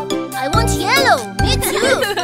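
Upbeat children's song backing music with a steady beat and jingling chimes, with a playful voice sliding up and down in pitch over it about a second in.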